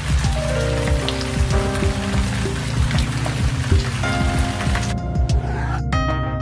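Rain sound effect, a steady hiss of falling rain, over background music; the rain stops about five seconds in while the music carries on.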